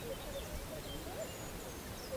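Wild birds giving scattered short, high chirps over faint outdoor background noise.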